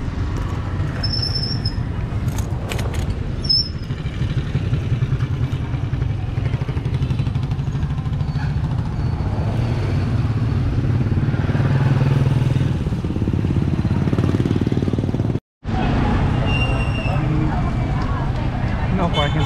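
Small motorcycle engine of a sidecar tricycle running at low speed, a steady pulsing rumble that swells a little about two-thirds of the way through. There are two short high squeaks in the first few seconds, and the sound cuts out for a moment near the end.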